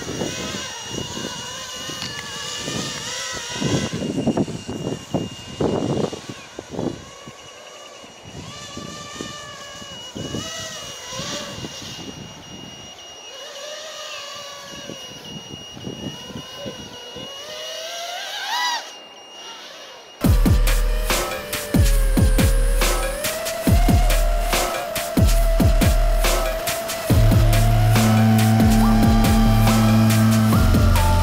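Walkera Furious 215 racing quadcopter's 2500KV brushless motors and three-blade props whining, the pitch rising and falling as it throttles through a maneuver, with a sharp rise just before the cut. About two-thirds in this cuts off abruptly and electronic music with a heavy beat takes over.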